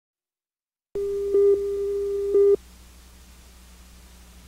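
Steady electronic test tone at the head of a videotape, starting about a second in and lasting about a second and a half, with two brief louder swells a second apart. After it cuts off, only low mains hum and tape hiss remain.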